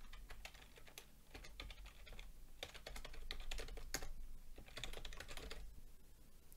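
Typing on a computer keyboard: a quiet run of quick key clicks as code is entered.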